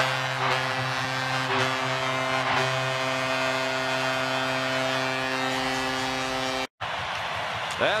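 Arena goal horn holding one steady low chord over a cheering crowd, with goal music mixed in, celebrating a home-team goal. The horn cuts off abruptly near the end, leaving crowd noise.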